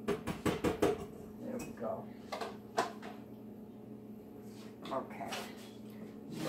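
Kitchen utensils clinking against a pot and dishes at the stove: a quick run of sharp clicks in the first second, then a few single knocks spaced out after it.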